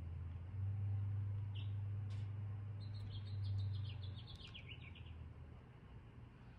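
Birds chirping outdoors, with single chirps early and a quick run of falling chirps in the middle. Under them runs a low steady hum that stops about four seconds in.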